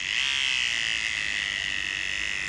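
Cordless electric hair clipper buzzing steadily as it edges the hairline in a line-up haircut.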